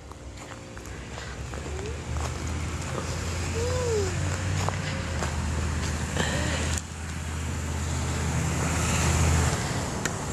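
A motor vehicle's engine running nearby, a low rumble that grows slowly louder and stops shortly before the end. A few faint short chirps and one sharp click sound over it.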